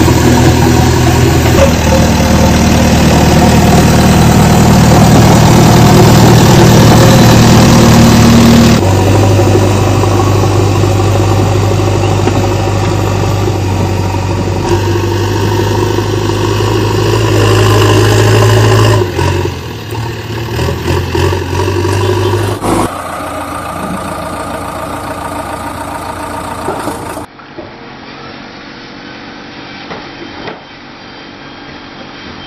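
A vehicle engine running steadily, its tone changing abruptly several times, about 9, 19 and 23 seconds in, and turning much quieter about 27 seconds in.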